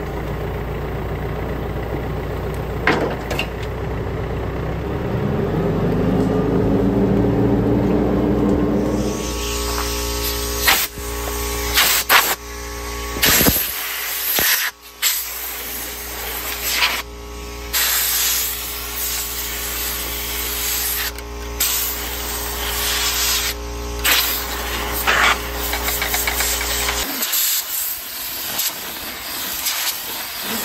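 Tractor running with a Rhino TS10 flex-wing rotary cutter behind it, the engine pitch rising over a few seconds. From about nine seconds in, a compressed-air blow gun hisses in repeated bursts, blowing dust out of the tractor's radiator and cooler, which had let it run hot. A steady hum under the blasts stops a few seconds before the end.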